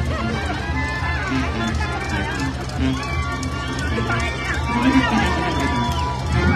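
Street wind band of clarinets and brass playing a melody of long held notes over a steady low bass, with the voices of a large crowd around it.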